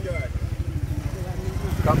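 Motorcycle engine running steadily nearby, a low even pulsing rumble under quiet voices.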